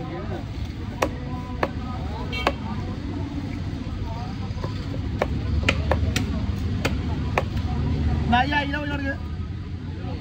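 Heavy steel cleaver chopping fish on a wooden log block: about nine sharp chops, three spaced out early and then a quicker run of them in the middle.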